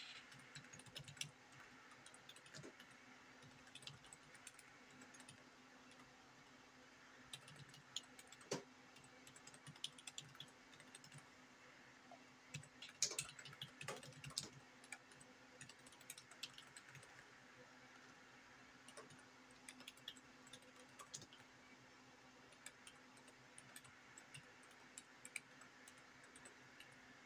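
Faint typing on a computer keyboard: scattered keystrokes in irregular runs, busiest and loudest about halfway through, over a steady low electrical hum.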